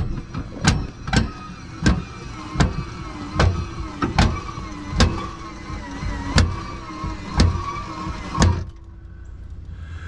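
Electric drive of a Lippert through-frame RV slide-out running with a steady, wavering whine, while its rack-and-pinion gear gives a sharp clack about every 0.7 seconds: the worn pinion gear skipping on the rack. The motor stops near the end.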